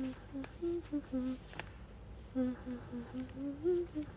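A woman humming a short tune to herself in two phrases of short notes, with a pause of about a second between them.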